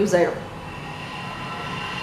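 A word of speech trails off, then a steady mechanical hum with faint high whines runs on in the room.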